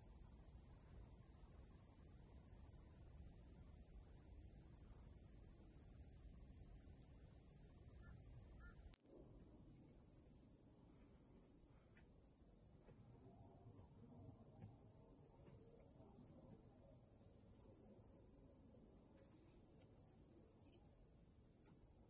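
A high, steady insect chorus chirring without pause, broken off for an instant about nine seconds in.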